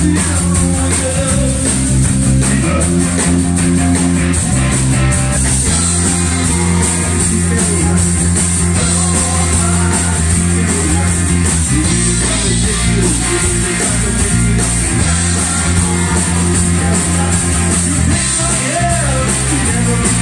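Rock band playing live: electric guitars, bass guitar and drum kit, with a singer at the microphone, playing a steady song.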